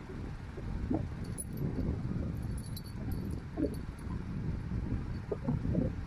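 Two Siamese cats wrestling on bedding: steady rustling of the covers, with the metal collar tag and small collar bell jingling briefly about a second in and again at two and a half to three seconds.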